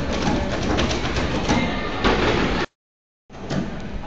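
Busy, echoing noise of a group in a large school gym: a dense jumble of clatter and knocks on the hardwood floor. About two and a half seconds in it cuts to dead silence for about half a second, then resumes.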